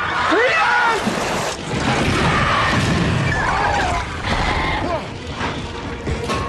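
Action-film sound mix of crashes and booms, with cries that glide up in pitch near the start and again about three seconds in.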